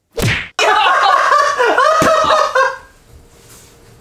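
A sharp hand slap on a person's head, then about two seconds of loud, high-pitched vocal outcry that stops before the final second.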